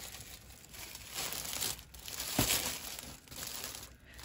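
Clear plastic packaging crinkling and rustling in irregular bursts as it is handled, with a tote bag sealed inside.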